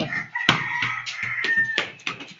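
A rooster crowing once: a long, high, nearly steady call that drops slightly at its end. A sharp knock comes about half a second in and another near the end.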